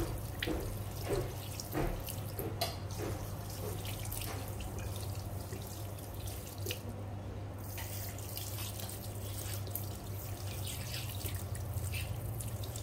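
Water from a handheld sink sprayer running over bare feet into a washbasin, with irregular splashes and drips.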